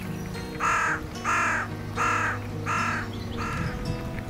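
A crow cawing five times in an even series, over steady background music.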